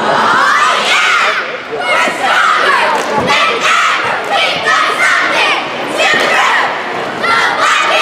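A cheerleading squad shouting a cheer in unison, in short rhythmic phrases about once a second.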